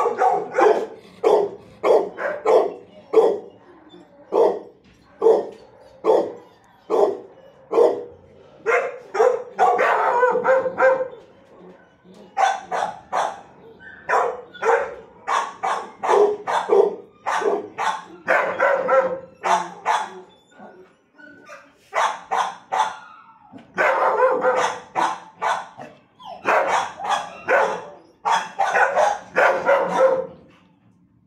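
Dogs in a shelter kennel barking over and over, about two barks a second, with denser flurries of barking around ten seconds in and again in the last third.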